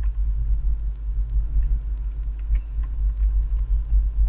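Steady low rumble with a few faint, scattered clicks.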